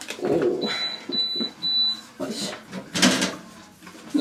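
A high electronic beep sounding three times, a short one followed by two longer ones, over quiet talk and the rustle of paper being handled.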